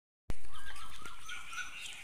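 Birds chirping and calling outdoors. The sound cuts in abruptly about a quarter second in after a brief silence, starting loud and fading away.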